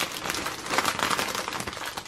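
Plastic film wrappers of packs of chocolate mini rolls crinkling as they are handled and pushed aside, a dense crackle of many small clicks that eases off near the end.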